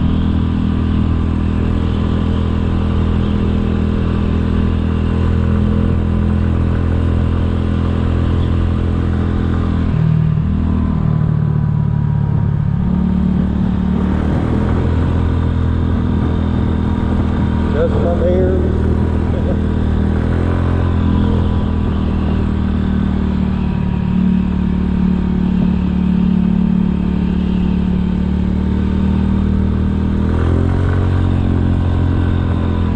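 A 2007 Kymco 250cc scooter's single-cylinder four-stroke engine runs steadily while riding at road speed. About ten seconds in, the engine note drops and wavers for a few seconds, then settles back to a steady drone.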